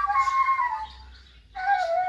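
Reed ney flute playing a slow melody with a breathy tone. A phrase steps down in pitch and fades out about a second in, and after a short pause a new phrase begins on a lower note.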